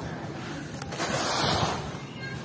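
Handfuls of dry, grainy material scooped and let fall back onto the heap in a tub, a sandy hiss of pouring grains that swells about a second in and fades near the end.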